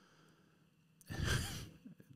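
A man's breathy sigh close to the microphone, starting about a second in after a small click and lasting under a second; the first second is nearly silent.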